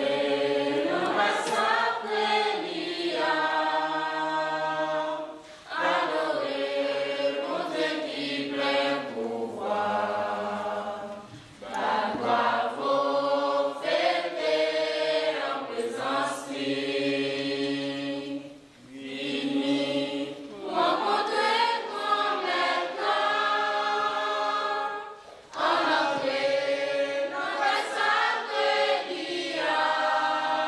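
A girls' choir singing unaccompanied. The singing comes in phrases of about six seconds, with long held notes and short breaks for breath between them, five phrases in all.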